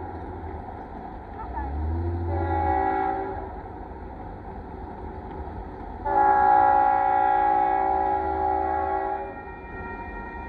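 Union Pacific freight locomotive's multi-note air horn sounding the crossing signal as the train approaches: a short blast about two seconds in, then a long blast of about three seconds starting around six seconds in, over a low rumble.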